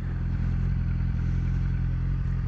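Sport motorcycle engine running steadily, an even drone with no revving.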